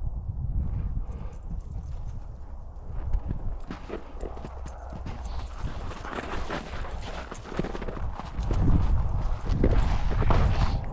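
Footsteps crunching through snow, a quick irregular run of crisp crunches that gets louder and denser near the end, over a steady low rumble of wind on the microphone.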